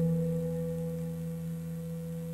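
A musical drone of a few steady, low held tones, slowly fading.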